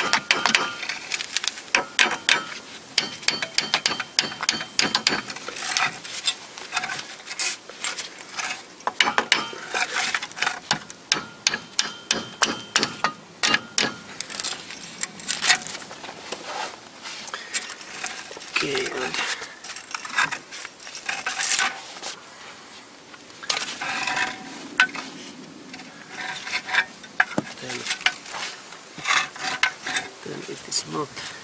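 Repeated hammer blows on the steel steering knuckle and ball joint of a Toyota Corolla's front suspension, a few sharp strikes a second with a couple of short pauses past the middle. The hammering is driving out the stuck old lower ball joint.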